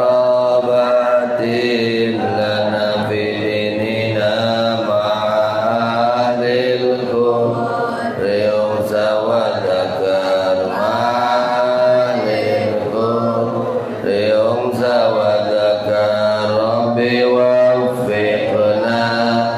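A man's voice chanting a melodic devotional prayer into a microphone, in long held notes that rise and fall.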